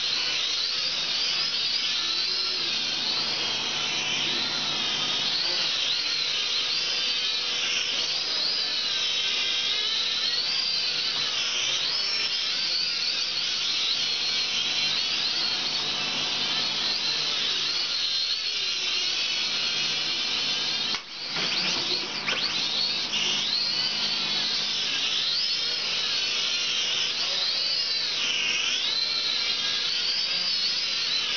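Syma X5C-1 quadcopter's small electric motors and propellers whining steadily, the pitch wavering up and down as the throttle changes. About two-thirds of the way through, the whine drops out for a moment and then climbs back up.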